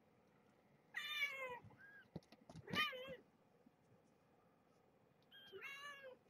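Young kittens, about two and a half weeks old, mewing: four short, high-pitched mews spread over a few seconds, some falling in pitch, one rising then falling.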